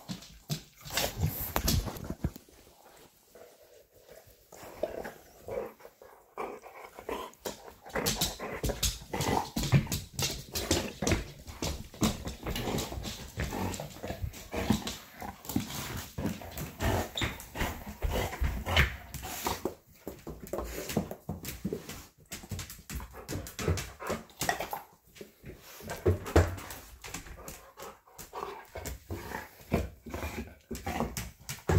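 Pet dog whimpering on and off close to the microphone, among many short clicks and knocks.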